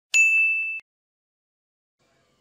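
A single bright, bell-like ding sound effect, struck once and ringing on one high tone for about two-thirds of a second, then cut off abruptly.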